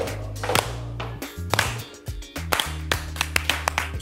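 A person clapping her hands several times, sharp irregular claps over background music with a steady low bass.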